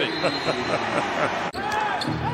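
Basketball arena noise just after a game-tying shot: several voices shouting over one another from players and bench. The sound breaks off abruptly about one and a half seconds in and gives way to quieter court sound.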